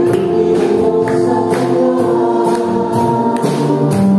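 A live praise band plays a worship song with drums, bass, guitars and keyboard while several voices sing in Tagalog. A steady beat of about two drum hits a second runs under sustained chords.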